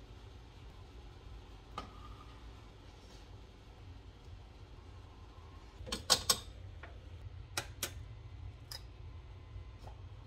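An egg being cracked for an egg wash: a quick cluster of sharp cracks about six seconds in, then a few light taps. A low steady hum runs under it.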